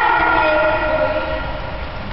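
A train whistle sounding one long multi-note chord that slowly fades toward the end.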